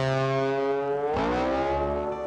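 Intro music sting: a held, distorted electric guitar chord that bends upward in pitch about a second in.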